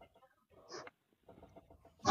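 Near silence: faint room tone, with one brief faint sound a little under a second in.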